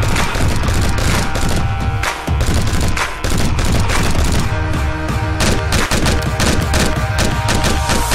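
Gunfire sound effects over background music with a heavy bass beat. The shots come singly and spaced out at first, then in rapid bursts in the second half.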